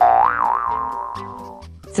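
A cartoon 'boing' sound effect: a loud pitched tone that wobbles up and down and fades away over under two seconds, over children's background music with a steady beat.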